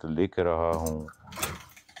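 A voice draws out the end of a word, falling in pitch. About a second in comes a short cluster of small clicks and rattles.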